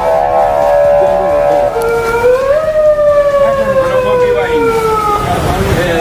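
A siren wailing: its pitch rises, holds, rises again about two seconds in, then falls slowly and fades about five seconds in.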